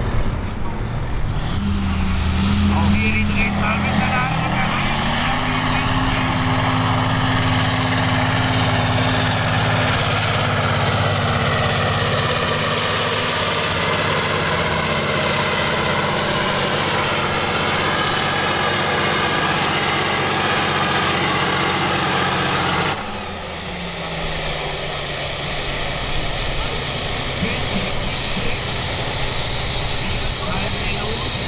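Kirovets articulated tractor's turbocharged diesel engine pulling a sled at full throttle. The engine revs up in the first few seconds, and a high turbo whine rises with it and holds. About three-quarters of the way through, the engine drops off sharply and the whine falls away, marking the end of the pull.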